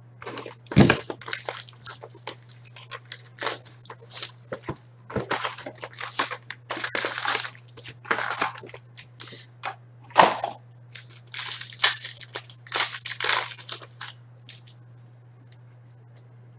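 Plastic shrink wrap being slit and torn off a cardboard hobby box of trading cards, then the box flap opened and the packs and cards handled: irregular crinkling, tearing and rustling, quieter in the last two seconds. A steady low electrical hum runs underneath.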